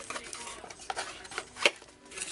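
A ceramic mug being slid out of a small cardboard box, with cardboard scraping and a few light clicks and taps, the sharpest a little over one and a half seconds in.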